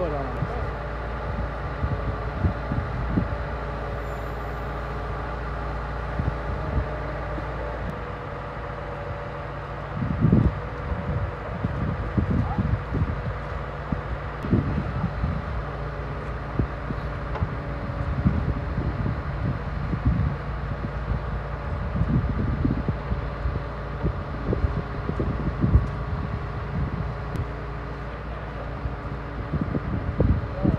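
Scania V8 diesel truck engine running steadily with a held, multi-toned hum, driving the hydraulics of its truck-mounted knuckle-boom crane as the boom unfolds and extends. Irregular low thumps join in from about ten seconds in.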